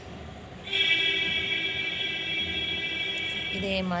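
A steady, high-pitched buzzing tone of constant pitch, like a horn or buzzer, starts about a second in and holds for about three seconds before cutting off.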